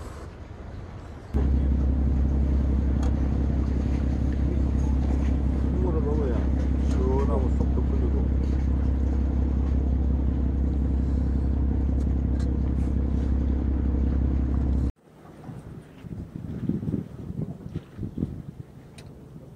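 A loud, steady low motor drone with an even buzz, like an engine idling, comes in suddenly about a second in and cuts off suddenly near the end. A voice speaks briefly over it in the middle.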